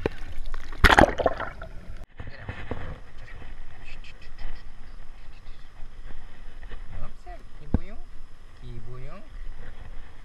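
Water splashing and sloshing, with a loud splash about a second in, cut off abruptly after two seconds. Quieter handling noise follows, with a few short vocal sounds from a man near the end.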